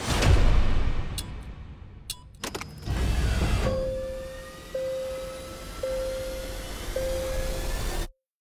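Trailer sound design and score. A deep whoosh opens it, followed by a few sharp clicks and another low rumble, and then a steady tone pulsing about once a second over slowly rising tones, building tension.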